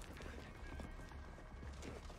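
TV drama soundtrack: a dense clatter like horses' hoofbeats with music underneath.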